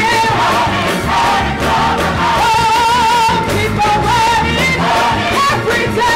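Gospel choir singing with a female lead vocalist out front, her held notes wavering with vibrato over the full choir and accompaniment.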